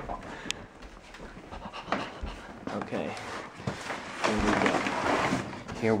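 A man breathing hard and straining as he carries a heavy cardboard box, with a longer, louder effortful breath about four seconds in. A few small knocks from the box are handled along the way.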